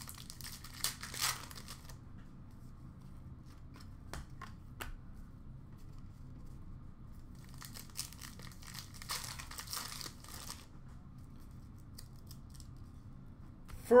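A hockey card pack wrapper being torn open and crinkled, in two spells: about a second in and again from about eight to ten and a half seconds in. A few light clicks of cards being handled fall between them.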